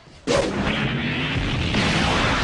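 A sudden loud boom, like an explosion sound effect, about a quarter second in, running straight on into a steady, continuous rumble.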